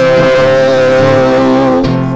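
A man's voice holds one long wordless note, slid up into just before and held until near the end, over strummed acoustic guitar.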